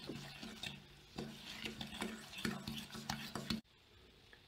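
A metal fork stirring and beating a runny melted butter-and-sugar mixture in a stainless steel pot, scraping against the pot about twice a second. The stirring stops suddenly near the end.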